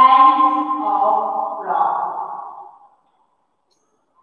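A woman's voice holding one long, drawn-out utterance at a steady pitch, changing sound about halfway through and fading out after about three seconds.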